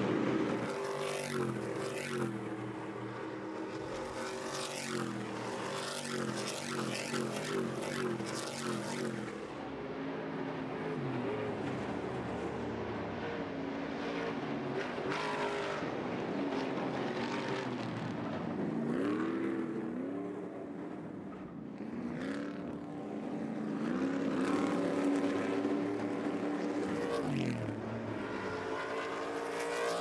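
Several Stadium Super Trucks' V8 race engines running at speed, their pitch repeatedly climbing and dropping as they rev through the gears and ease off for corners.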